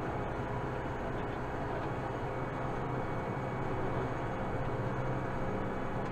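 Kubota M7060 tractor's four-cylinder diesel engine running steadily under way, a constant drone heard from inside the cab.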